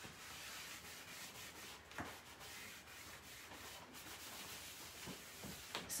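Faint, steady rubbing of a cotton rag wiping white gel stain back off a bare oak tabletop, with a small tick about two seconds in.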